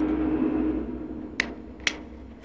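A steady low tone fades out within the first second, leaving a faint hum. Then come two short, sharp clicks about half a second apart.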